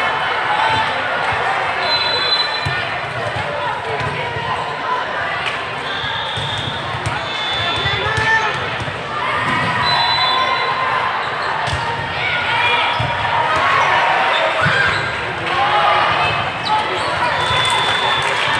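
Volleyballs being hit and bouncing on an indoor sport court, repeated thuds over a steady babble of many voices echoing in a large hall. A few brief high-pitched tones sound now and then.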